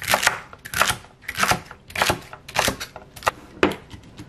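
Chef's knife slicing through crisp celery stalks onto a wooden cutting board: a run of about seven crunchy cuts, roughly one every half second.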